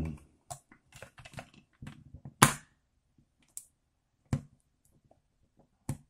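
Small plastic clicks and knocks from a Canon 1200D DSLR body being handled and pried at by hand as its back cover is worked loose, irregular and spaced out, with the sharpest click about two and a half seconds in.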